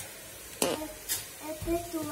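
Lamb and vegetables sizzling in a hot open pressure cooker, with a sharp knock about half a second in as artichoke pieces go into the pot.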